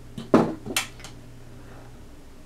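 A quick run of four or five metallic knocks and clinks in the first second, the loudest about a third of a second in. This is the polished metal collar mandrel being handled on the cutting mat.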